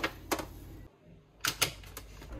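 Hard plastic clicks and knocks of fridge crisper drawers and fruit punnets being handled: two sharp clacks at the start and two more about three quarters of the way through, with a brief near-silent gap between them.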